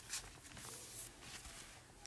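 Faint background hiss and room noise, with a soft, brief sound just after the start.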